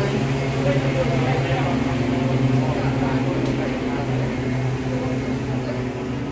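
Steady low mechanical hum of plant machinery or ventilation in a large warehouse, with indistinct voices in the background.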